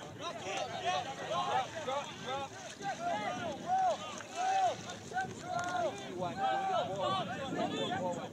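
Several indistinct voices on a soccer pitch, players and spectators calling and shouting over one another in short rising-and-falling cries, with no clear words.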